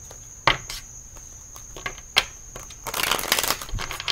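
A deck of tarot cards being shuffled by hand: a few sharp clicks and taps, then a rapid rattling flutter of cards about three seconds in.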